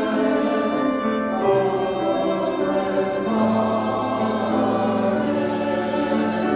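Mixed church choir singing sustained chords, with a low note joining about halfway through.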